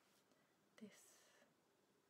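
Near silence, broken about a second in by a young woman softly starting a word, almost a whisper.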